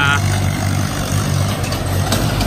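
An engine idling steadily close by, a low even hum that does not change.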